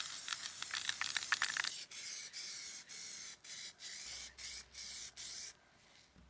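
Aerosol spray-paint can spraying a motorcycle wheel rim: a steady hiss for about two seconds, then a series of short bursts of roughly half a second each, stopping shortly before the end.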